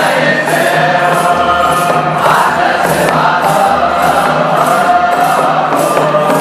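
Eritrean Orthodox Tewahdo mezmur: a choir singing a spiritual song over a steady beat.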